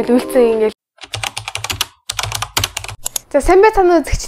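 Computer keyboard typing: rapid clicks at about eight a second for roughly two seconds, with a short break in the middle, between stretches of a woman's speech.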